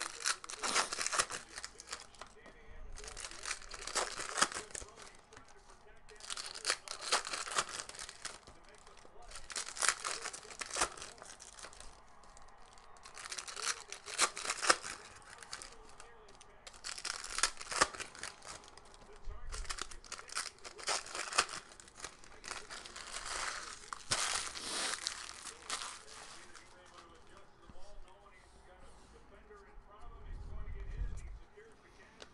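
Foil trading-card pack wrappers being torn open and crinkled by hand, in a run of about eight separate bursts, each a second or two long.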